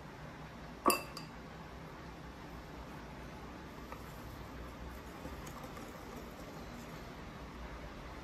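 A metal kitchen utensil clinks sharply against a ceramic bowl once about a second in, followed at once by a second, lighter clink. After that only faint soft scraping is heard as a wire whisk starts working into dry flour.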